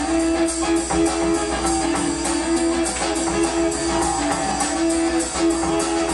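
Live rock band playing an instrumental passage: electric and acoustic guitars over drums, with a steady beat of about four strokes a second and no vocals.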